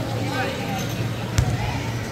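A power soccer ball smacks once sharply on the hardwood gym court about one and a half seconds in. A steady low hum runs under it.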